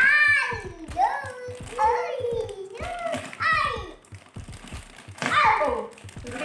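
A young child's voice, exclaiming and chattering, with the crinkle of a plastic bag as hula hoop tube sections are pulled out of it.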